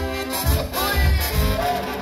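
Live Mexican banda music: a brass section of trumpets and trombones playing a sustained chord and phrases over drums and a low bass beat.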